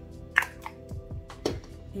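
Two quick spritzes of a Morphe spray onto a makeup brush, the first the louder, followed by a small click, over soft background music.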